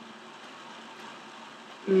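A pause in speech filled only by faint, steady background hiss (room tone). Near the end a short voiced "mm" begins.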